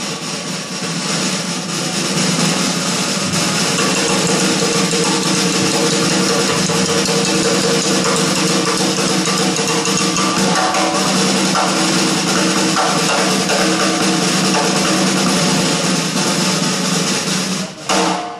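Live rock band with drum kit, electric bass, guitar, keyboards and soprano saxophone playing a loud, dense, noisy passage: a steady wash of cymbals and distorted sound over a few held low notes.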